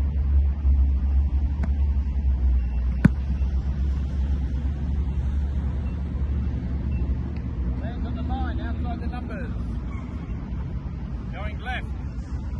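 Wind rumbling on the microphone throughout, with a single sharp smack about three seconds in as a punter's foot strikes an American football on a rollout punt.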